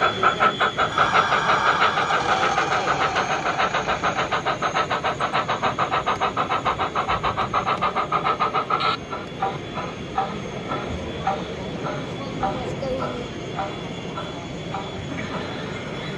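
Sound-fitted (DCC) O gauge model French steam locomotive chuffing rapidly, with evenly spaced exhaust beats and hiss through its onboard speaker. The fast beats stop abruptly about nine seconds in, leaving slower, softer beats.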